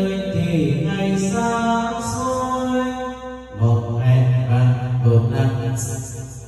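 A man singing a Vietnamese song into a microphone through an ETC G8000 Pro karaoke mixer. He holds two long notes with a short break about halfway, and the mixer's echo effect and built-in voice enhancer give them heavy echo.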